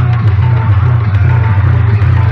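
Very loud music with a heavy, steady bass blaring from a large street DJ sound-box rig.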